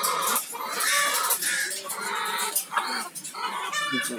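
Chickens clucking and squawking in a series of short calls, with a sharper squawk near the end.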